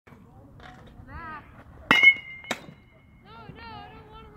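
A metal baseball bat hitting a pitched ball with a sharp ping about two seconds in, ringing for about a second, with a second knock half a second after the hit.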